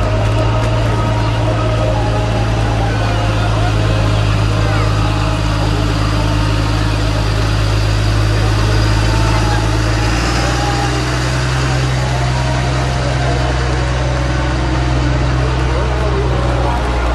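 KAMAZ truck diesel engines running as parade trucks drive past close by: a steady low drone that shifts in pitch about ten seconds in.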